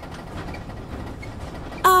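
Steady low road rumble of a van driving, heard from inside its cabin as background ambience. Near the end a woman says a hesitant 'uh'.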